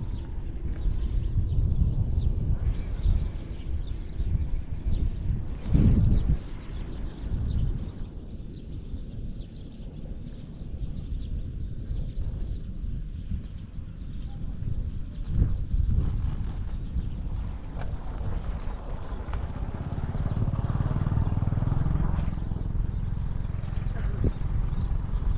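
Wind buffeting the microphone with an uneven low rumble, and a single thump of handling about six seconds in, the loudest moment.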